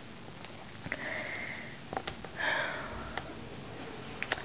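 A person sniffing or breathing through the nose close to the microphone, twice, each breath about half a second long, with a few faint clicks.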